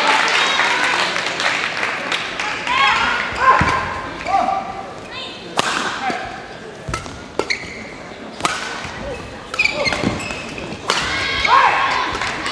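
Badminton rally: a racket striking the shuttlecock in several sharp cracks, a second or more apart, with sneakers squeaking briefly on the court floor. Voices carry in the background.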